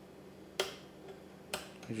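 Two sharp clicks about a second apart: the dimmer control of a 1986 General Electric clock/radio/TV pressed to switch the digital clock display between its two brightness settings. A faint steady hum runs underneath.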